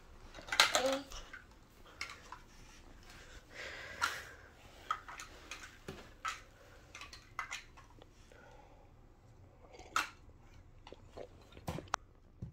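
Plastic Mega Bloks building blocks clicking and clattering as a toddler rummages in the bag and handles them: a scatter of light, irregular clicks and small knocks.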